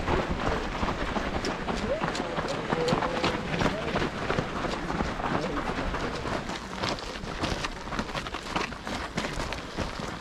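Many runners' feet patter on a dirt road and trail in a steady, dense stream of footfalls, with indistinct voices from the pack.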